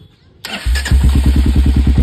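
Royal Enfield Hunter 350's single-cylinder engine, fitted with an aftermarket Austin Racing exhaust, being started: a brief crank about half a second in, then it catches and settles into a loud, evenly pulsing idle.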